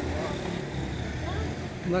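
Low, steady rumble of street traffic.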